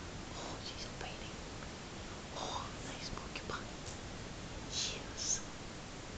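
Soft whispered speech: a few short, breathy phrases with hissy 's' sounds, the clearest two near the end, over faint room noise.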